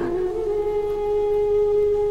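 Background music: a single long note held at a steady pitch, with a slight lift just after the start.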